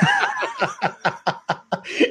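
Men laughing, a fast run of short laughs, about six a second.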